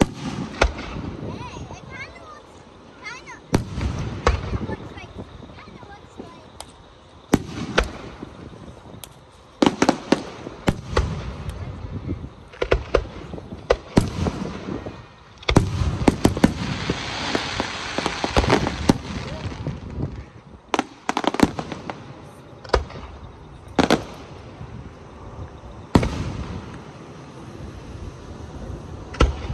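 Aerial fireworks shells bursting overhead, sharp bangs every second or two, each followed by a rumbling tail. A denser run of bangs with a hissing haze comes a little past halfway.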